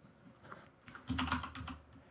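Typing on a computer keyboard: a short run of quick key clicks, spread out at first and bunched together in the second half.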